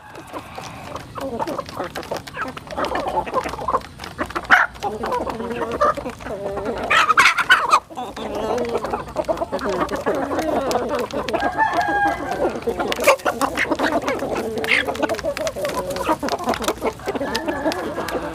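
A flock of chickens and roosters clucking continuously while feeding, with many short sharp clicks of beaks pecking grain from a trough.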